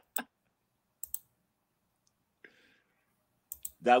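Two quick pairs of computer keyboard clicks, one about a second in and another near the end, over an otherwise silent call line.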